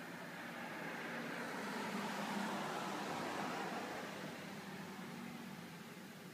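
A car passing by out of sight, its tyre and engine noise swelling to a peak about two seconds in and fading away over the next few seconds.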